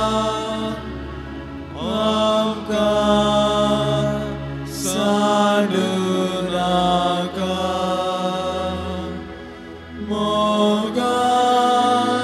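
A slow church hymn sung in long held notes with instrumental accompaniment. New sung phrases enter about two, five and ten seconds in, over steady sustained chords.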